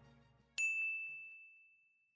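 A single bright ding sound effect, struck about half a second in and ringing away over a second and a half. The tail of the background music fades out just before it.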